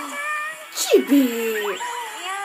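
Japanese anime voice acting from the preview, played through a phone speaker: a short hissing whoosh about a second in, then a high, drawn-out cry that slides down in pitch.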